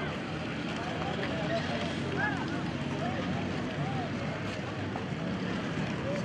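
Crowd of many people talking at once: a steady babble of overlapping voices with no single speaker standing out, over a low steady hum.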